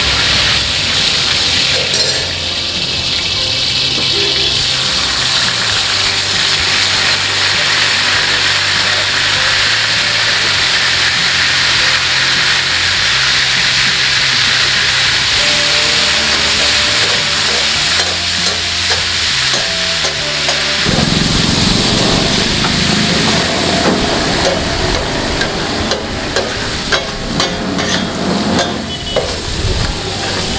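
Hot oil sizzling steadily on a large flat iron tawa while a steel spatula stirs and scrapes through it. In the last few seconds, sharp clicks of the spatula striking and scraping the griddle come more often.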